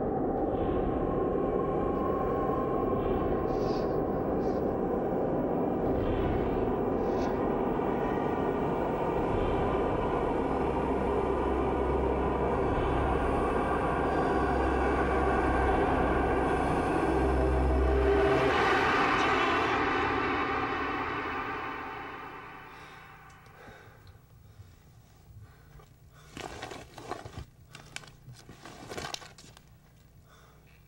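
Dark, droning horror-film score with a deep rumble beneath it. It swells to a peak and then fades away about three-quarters of the way through. A few faint, short sounds follow near the end.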